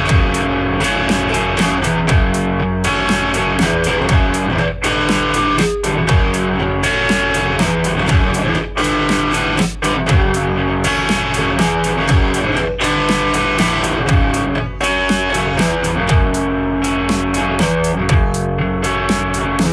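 Instrumental passage: an electric guitar played over a programmed backing beat, with a deep kick that falls in pitch about every two seconds and quick, regular high ticks like hi-hats.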